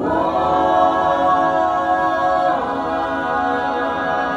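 A cappella vocal group singing wordless sustained chords in close harmony, moving to a new chord at the start and again about halfway through.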